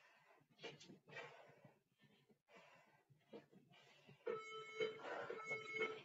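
A faint electronic tone with several steady pitches sounds over a light hiss, starting about four seconds in. Before it there is near silence with a few faint short sounds.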